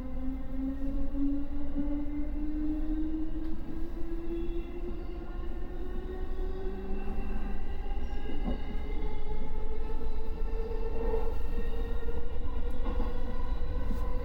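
Electric commuter train accelerating, its traction motors whining in a tone that climbs steadily in pitch as speed builds, over a steady low rumble of wheels on rail, heard inside the front of the train. A couple of brief clicks from the track come through in the second half.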